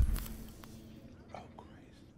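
A short burst of noise at the very start that fades away over about a second, then a quiet, whispered exclamation.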